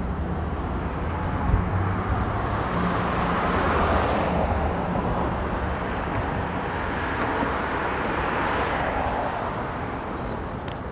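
Downtown street traffic: a passing vehicle's rushing noise swells to a peak about four seconds in and fades, with a softer second swell near the end, over a low steady engine hum.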